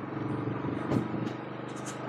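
Royal Enfield Classic 350 single-cylinder motorcycle engine running steadily under way, heard from the rider's camera.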